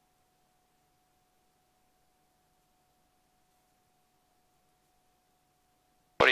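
Near silence: the sound track drops out, leaving only a faint steady tone.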